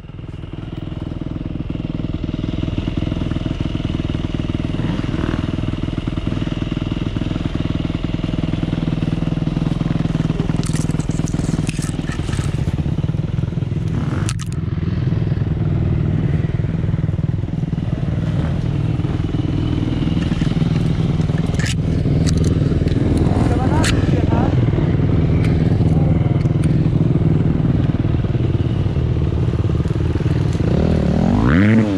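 Dirt bike engines running at low revs, with brief revs and a few sharp knocks and clatter.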